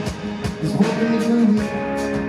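Live rock band playing an instrumental stretch of a song, with an electric guitar carrying the melody over steady drum hits.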